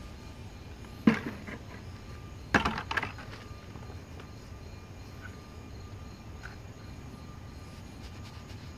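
Plastic buckets of foam being handled by hand: a short cluster of sharp knocks about two and a half seconds in, over a steady faint background with a thin high hum.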